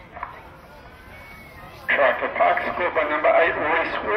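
Faint open-field background for the first half, then a man's commentary voice starts abruptly about two seconds in and talks on.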